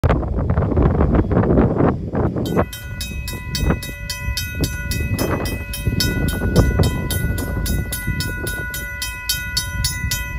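A RACO mechanical crossing bell starts ringing about two and a half seconds in, striking rapidly at about four strokes a second. It sounds because the crossing is activated for an approaching train. Before the bell starts there is a steady rushing noise.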